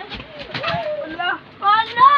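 Children's voices talking and calling out, with a loud high-pitched shout near the end.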